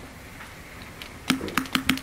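A quick run of about five sharp, hollow taps on the wooden meeting table, starting a little past a second in and a few tenths of a second apart; before them only quiet room tone.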